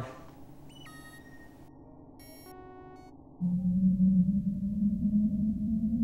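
Synthesized sci-fi spaceship sound effects: a few soft electronic bleeps, then about three and a half seconds in a loud, low spaceship hum starts suddenly and slowly rises in pitch.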